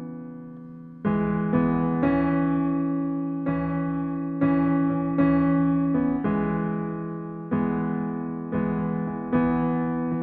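Korg SV1 stage keyboard playing a slow right-hand melody, one note at a time, each note struck and left ringing as it fades, about a dozen notes.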